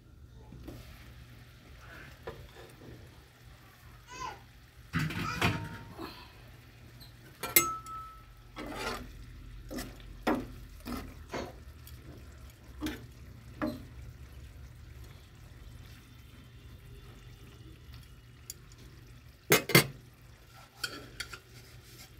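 A glass pan lid is handled, then a spatula stirs and knocks in a pan of simmering fish curry. It makes scattered clinks, scrapes and knocks over a steady low hum, with a sharp clatter near the end.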